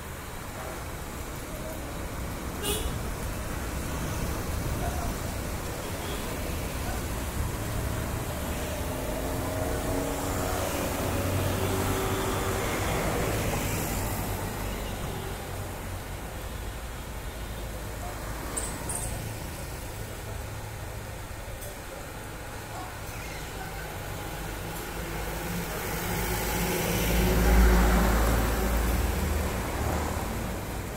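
Electric hydraulic power pack, its motor and pump running steadily to drive oil into a hydraulic cylinder and push its rod out. The low hum grows to its loudest a few seconds before the end.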